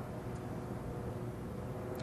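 Quiet outdoor golf-course ambience with a steady low hum, then a single faint sharp click just before the end as the putter strikes the golf ball.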